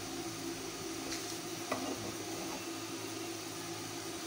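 Ghee sizzling faintly in a nonstick frying pan on the burner as a silicone spatula spreads it, over a steady low hum, with a couple of light spatula taps between one and two seconds in.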